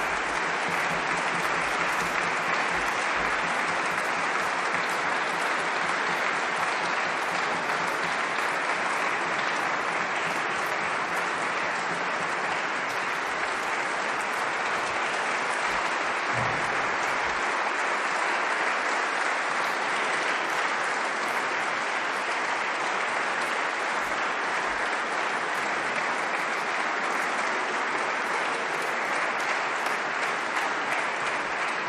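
Concert audience applauding, a long, steady round of clapping that follows the end of a piece.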